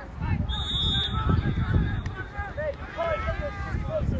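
Men's voices talking and calling out across an open playing field, over a low rumble of wind on the microphone.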